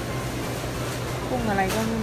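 Steady low background hum of a supermarket's refrigerated display cases and air handling, with a person talking in the second half.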